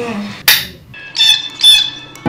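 Two short, high bird calls in quick succession in the second half, after a brief hiss-like burst about half a second in.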